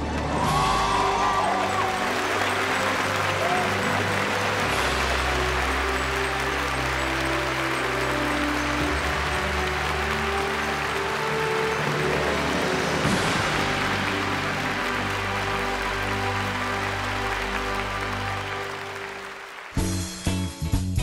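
Large audience applauding and cheering, with a few whoops near the start, over steady background music; the applause dies away near the end.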